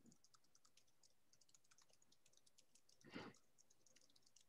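Near silence, with faint scattered clicks and one brief soft noise about three seconds in.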